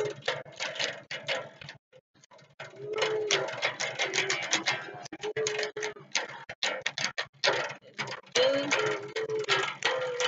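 Electric bass guitar plucked and strummed rapidly, a busy run of sharp string clicks and twangs with a short pause about two seconds in. A voice hums or sings along in short held notes in places.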